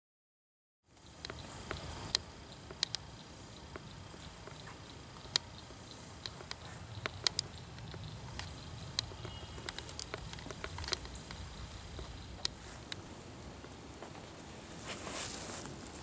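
Quiet outdoor ambience on a camera microphone, starting about a second in: a low steady rumble with scattered small clicks and taps, and faint steady high-pitched tones above it. Near the end comes a louder rustle.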